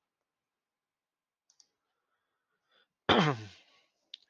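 A few faint clicks, then about three seconds in a man gives a single sudden, loud cough whose pitch drops as it dies away.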